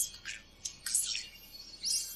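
Audio from the anime episode playing at low volume, heard as a string of short, thin, high-pitched chirps with almost no low end.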